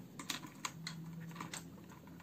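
A quick, irregular run of light clicks and taps as pens are handled and set down on the clipboard and table.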